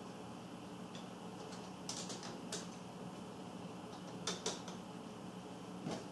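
Scattered light clicks and taps of small plastic and metal RC parts as a shock absorber is worked onto its mount, about half a dozen sharp clicks over a faint steady room hum.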